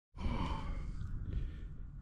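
A person's breathy exhale close to the microphone, fading after about a second, over a low rumble.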